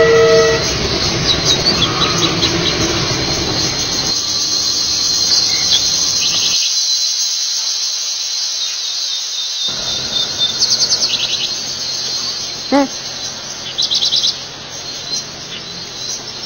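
A train horn blast ends about half a second in, and a passing train rumbles on for about six seconds. Then birds and insects chirp with rapid high trills over a low steady background, with a short louder call near the end.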